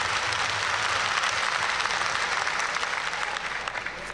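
A large audience applauding, the clapping thinning out near the end.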